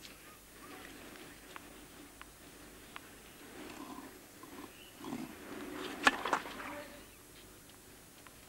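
A tennis serve on a clay court: a few light ball bounces, then a grunt and a sharp racket-on-ball crack about six seconds in, with a second crack right after.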